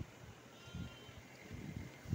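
Faint outdoor ambience with a brief, thin high-pitched animal call a little after the start.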